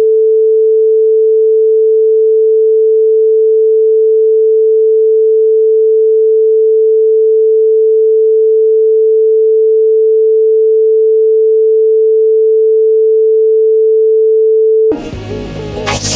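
A single loud, steady electronic sine tone, one unchanging mid-pitched note like a test tone or dial tone, held for about fifteen seconds. Electronic music cuts in about a second before the end.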